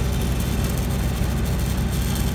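Engine-driven welding machine running steadily with a low, even drone.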